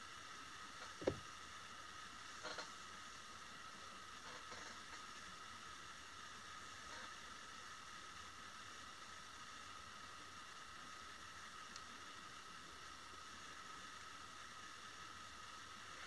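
Near silence: a faint steady hiss with a thin high whine, broken by one soft click about a second in and a couple of fainter handling sounds.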